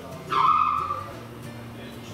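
Nova Verta spray booth's extraction starting up when switched to spray: a sudden loud rush with a high whine about a third of a second in, dying away within a second, leaving a steady low hum.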